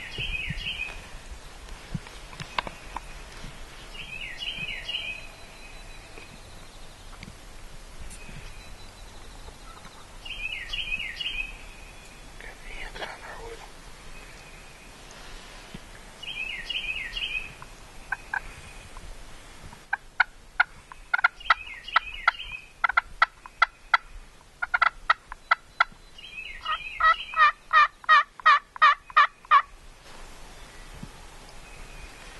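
Wild turkey gobbling over and over, a rattling gobble about every five or six seconds. From about two-thirds of the way in, a run of loud turkey yelps comes in on top. Near the end the yelps come faster and closer together, and they are the loudest sound.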